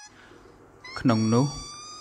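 Speech only: a narrator speaking Khmer, with a brief pause and then one drawn-out word about a second in.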